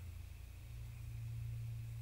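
Quiet room tone with a steady low hum; no distinct brush strokes stand out.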